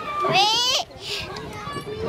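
A young child's high-pitched voice calls out once, rising in pitch, with children playing on playground swings.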